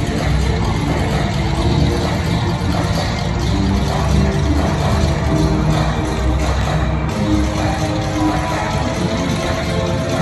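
Show soundtrack music playing loudly and steadily over an outdoor sound system, with a strong bass, picked up on a phone's microphone.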